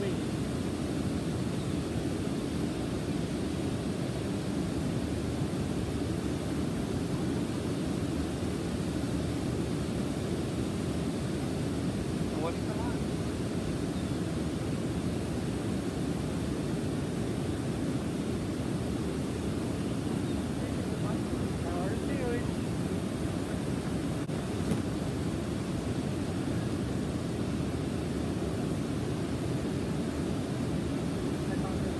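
Steady, even rush of flowing river water, with no breaks or strikes.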